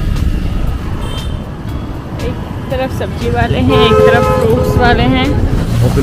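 Wind buffeting the microphone and road and traffic rumble on a moving scooter. A voice comes in over it about halfway through.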